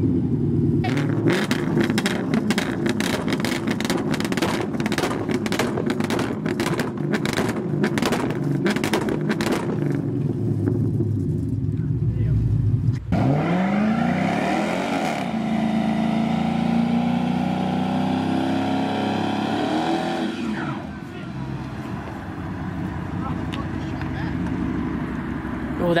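A V8 muscle car doing a burnout, its tyres spinning. The engine is held high with a rapid stutter for about twelve seconds, drops sharply and revs up again, runs high, then eases to a lower note a few seconds before the end.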